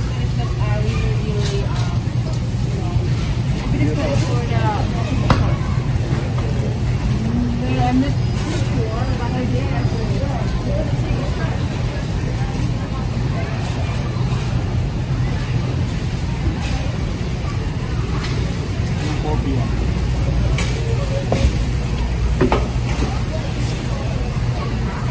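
Warehouse store ambience: a steady low hum under scattered distant shoppers' voices, with a few light clicks and clatters.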